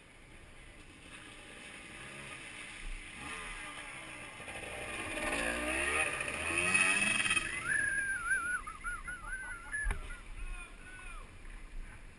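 Trail motorcycle engines revving as a bike rides through a flooded ford, with water splashing. It builds to a peak about six to seven seconds in, and a wavering high-pitched cry follows.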